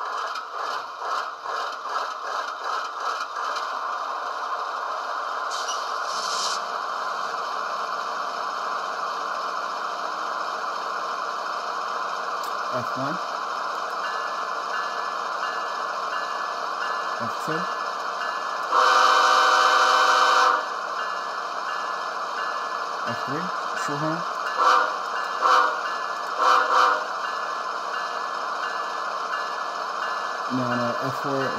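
Model locomotive sound decoder (Tsunami2) in an HO-scale Athearn Genesis ES44DC playing a GE diesel prime mover idling with a steady drone. About two-thirds of the way through, the Nathan K5HL air horn sounds one long blast of about two seconds, followed a few seconds later by a handful of short horn toots.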